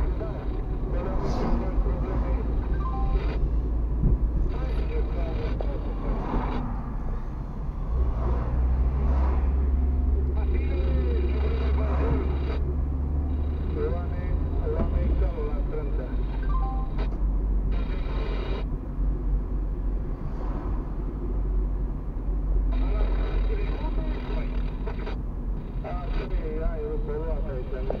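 Car cabin noise from a car being driven in town: a steady low engine and road rumble that grows louder about eight seconds in and eases again about halfway through, with indistinct voices murmuring over it.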